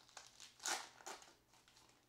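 Foil trading-card pack wrapper crinkling as the pack is opened and the cards slid out, with a few short crackles, the loudest just under a second in.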